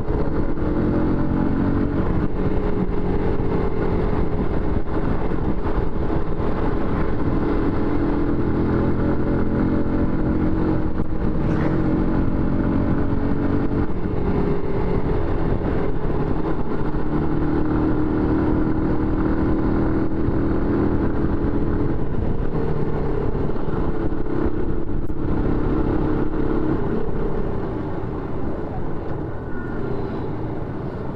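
Motorcycle engine running under way as it is ridden, its note rising and falling with throttle and gear changes. Near the end the engine eases off and gets quieter as the bike slows.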